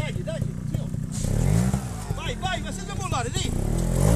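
Trials motorcycle engine revving as the bike climbs a step, the revs rising and falling about a second and a half in.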